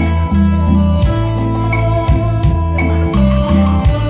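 Yamaha keyboard playing the instrumental introduction of a song, with a steady drum beat and a bass line under the melody.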